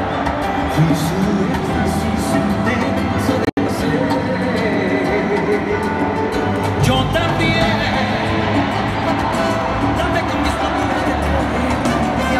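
Live salsa band with timbales among the percussion, played loud over a stadium PA and heard from among the audience, with a male voice singing over it. The sound cuts out for an instant about three and a half seconds in.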